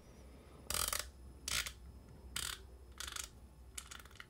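Metallic clicking of a Shimano Talica 16iiA lever-drag reel's drag mechanism as a part on the side plate is turned by hand, in about five short runs of clicks. The clicks are the reel's two-sided push pin giving audible feedback as the setting moves.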